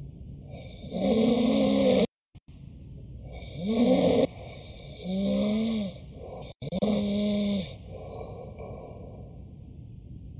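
A man snoring loudly in his sleep: four long, rough snores, each about a second, one after another with quieter breathing between. It is the snoring of a man who has noticed signs of sleep apnea in himself and is seeking a sleep study.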